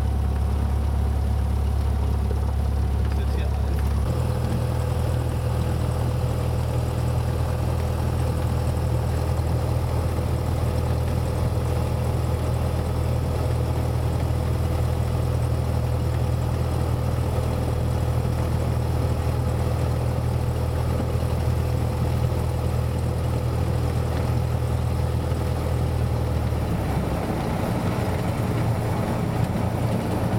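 Cessna 172's four-cylinder piston engine and propeller running steadily while taxiing, heard from inside the cabin. The engine note shifts about four seconds in and again near the end as the power is changed.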